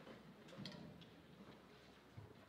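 Near silence: quiet room tone with a few faint clicks, about half a second and a second in.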